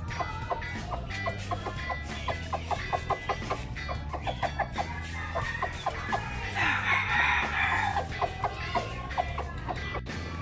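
Gamefowl chickens clucking in a run of quick, short notes, then one longer, louder call, a crow, about seven seconds in. Music plays underneath.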